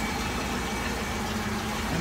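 1968 Chevrolet Camaro's 327 V8 idling steadily.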